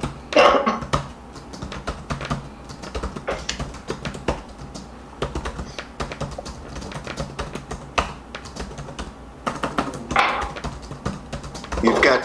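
Irregular clicking of typing on a computer keyboard, picked up by a participant's microphone on a video call. A short laugh comes just at the start.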